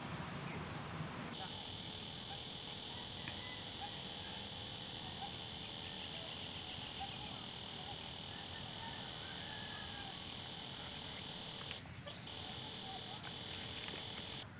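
Loud, steady, high-pitched insect drone, as of forest cicadas. It starts suddenly about a second in and drops out briefly about two seconds before the end.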